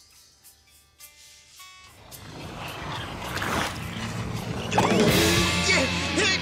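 Cartoon soundtrack music and effects: a few short, light notes, then a rushing noise that builds from about two seconds in and is loudest near the end.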